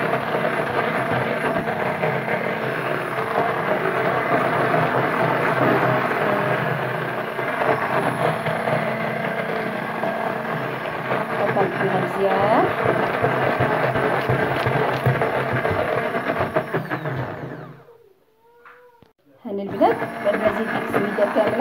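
Hand-held immersion blender running in a bowl of egg, orange and semolina batter, blending the semolina in. It cuts out about two seconds before the end and starts up again right at the end.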